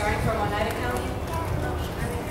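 A person's voice speaking through a microphone and public-address loudspeakers, over a low rumble.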